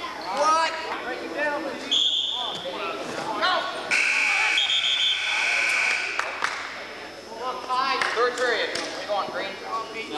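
Referee's whistle blasts in a gym: a short high blast about two seconds in, then a longer, slightly lower blast of about two seconds starting about four seconds in, over the murmur of a crowd.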